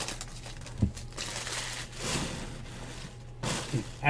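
Foil trading-card pack wrappers crinkling and tearing as packs are opened by hand, with a short thump about a second in. A faint, steady low hum runs underneath.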